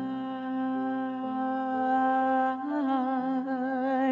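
A young male singer holding one long sung note, steady at first and then with a wide vibrato from about two-thirds of the way in, over sustained backing chords that change twice.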